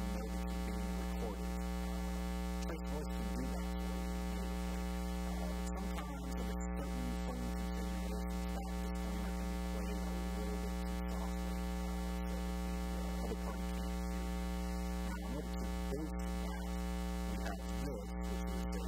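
Steady electrical mains hum, a low buzz with a stack of overtones, running at an even level.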